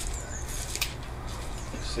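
A single sharp click about a second in, over a steady low background, with a couple of faint high bird chirps.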